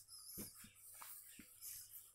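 Near silence: faint hiss and low hum of the recording, with a few soft clicks.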